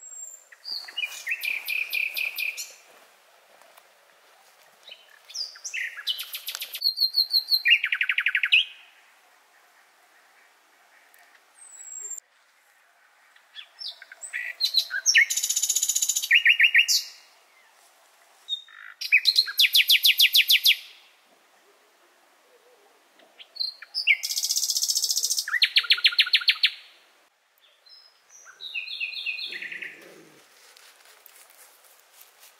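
A songbird singing at night: loud, varied phrases of rapid repeated notes, about seven phrases with short pauses between them.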